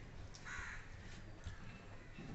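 A single short animal call, about half a second in, over faint clicks of people eating by hand.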